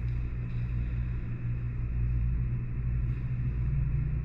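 A steady low hum that holds evenly.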